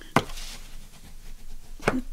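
Two sharp taps about a second and a half apart, with a soft rubbing between, as a bone folder is pressed and run along folded cardstock on a cutting mat to set the creases.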